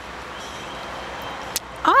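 Steady background hum of distant road traffic, with a single sharp click about a second and a half in.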